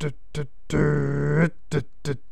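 A man imitating the pulsing of a push-button coffee grinder with his voice: short grunted beats about three a second, then one long held hum of under a second in the middle, then short beats again. This is the long-beat, short-beats pulsing he uses to grind dark-roast beans that stick together.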